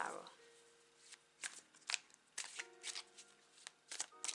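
A tarot deck being shuffled by hand: a series of short, soft card slaps and riffles at an uneven pace, about seven in all.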